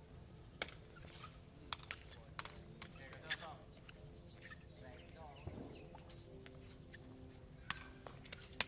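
Sharp cracks of a woven sepak takraw ball being kicked during a rally: a few spaced cracks in the first few seconds and a louder one near the end, with players' voices faint in the background.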